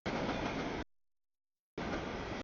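Mixed freight train's covered hoppers and tank cars rolling past on the rails, a steady wheel-on-rail rumble. It is heard in two chunks that cut off and back in abruptly, with dead silence between them.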